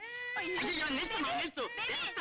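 A child crying and wailing in high, drawn-out cries that rise and fall in pitch, with a long held cry at the start.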